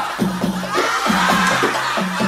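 Band music with a quick, steady drum beat, about four strokes a second, under low sustained notes and a higher melody line.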